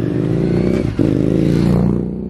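Royal Enfield Interceptor 650's 648cc air- and oil-cooled parallel-twin engine pulling hard under open throttle as the bike accelerates past, its note rising, with a brief dip about a second in, like a gear change.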